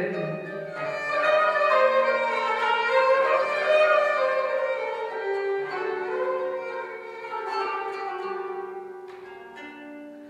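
A djoze, the Iraqi bowed spike fiddle, plays a melody in long held notes over a plucked qanun accompaniment. The music trails off near the end.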